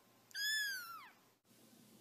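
A small kitten meowing once: a single high-pitched mew just under a second long, its pitch dropping away at the end.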